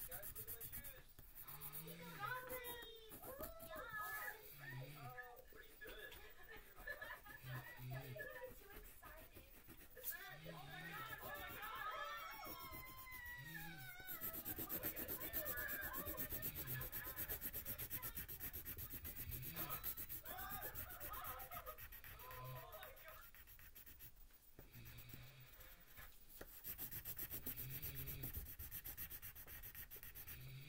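A pencil scratching back and forth on paper, shading in a drawing. Indistinct voices and other sounds play underneath at times.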